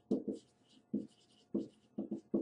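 Dry-erase marker writing on a whiteboard: about five short, quick strokes, each with a faint squeaky hiss.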